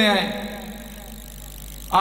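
A man's voice over a microphone, drawing out the last word of a chanted phrase as its pitch falls and fades away. About a second and a half of pause follows with only faint, steady background noise, and the voice starts again near the end.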